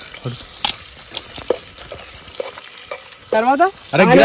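Oil sizzling in a metal pot over a wood fire, with a few sharp clicks of a metal spoon against the pot as it is stirred. A voice comes in near the end.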